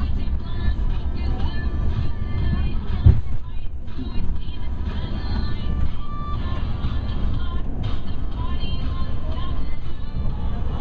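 Steady low rumble of a passenger train running, heard from inside the carriage, with a single thump about three seconds in.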